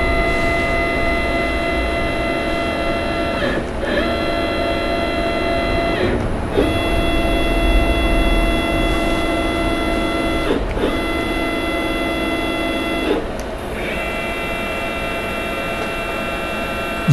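CNC mill axis stepper motors whining while jogged at a steady speed, one axis after another. The steady whine is made of several tones together and comes in five runs, each cut off by a brief pause as the jog key changes, with a slightly different pitch from run to run.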